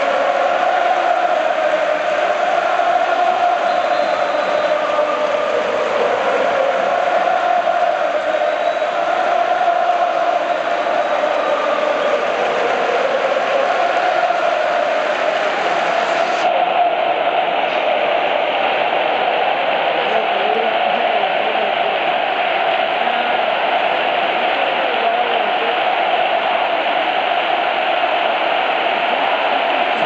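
Large stadium crowd of football supporters singing a chant together, loud and steady without a break.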